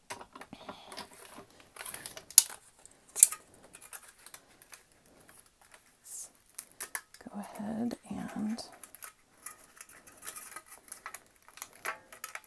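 Thin aluminum sheet cut from a drink can, with its paper backing, crinkling and crackling as it is handled and flexed after die cutting. Scattered small clicks run through it, with two sharper ones between two and three and a half seconds in.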